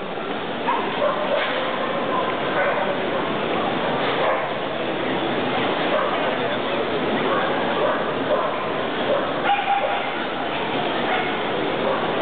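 A dog whining and yipping now and then over the steady babble of a crowded, echoing exhibition hall.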